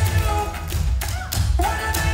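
Clogging taps, the dancers' tap shoes striking the stage in quick patterns over a pop song with a strong bass playing through the house speakers.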